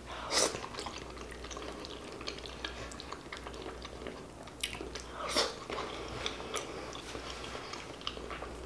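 Wet chewing, lip smacks and sticky squelches from eating braised pig feet, with the tender meat being pulled off the bone by hand. The sounds come as scattered soft clicks, a little louder about half a second in and again around five seconds in.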